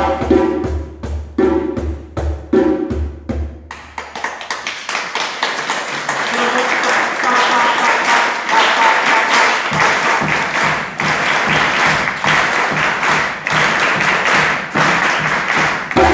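Live hand-drumming on a djembe in a West African piece: the opening seconds carry a pitched, pulsing accompaniment, then from about four seconds in the sound becomes a dense, fast run of drum strokes that carries on to the end.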